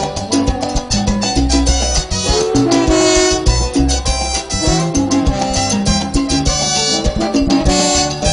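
A live cumbia band plays an instrumental passage: a brass section carries the tune over bass and percussion with a steady dance beat.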